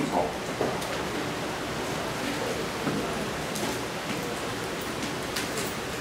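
Chalk tapping and scratching on a blackboard as characters are written, with a few faint ticks over a steady hiss of room noise.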